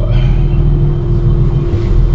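Dive boat's engine running steadily as the boat gets under way, heard from inside the wheelhouse: a loud, steady low drone with a constant hum over it.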